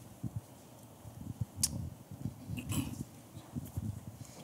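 Handling noise from a handheld microphone: irregular low thumps and rubbing, with one sharp click about one and a half seconds in.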